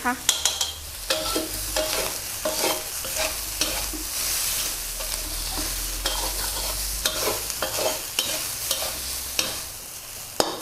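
Rice being stir-fried in a metal wok: a metal spatula scraping and clinking against the pan again and again over a steady sizzle.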